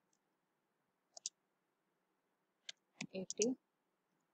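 A few separate computer keyboard keystrokes: a quick pair about a second in, then another shortly before a brief spoken word near the end.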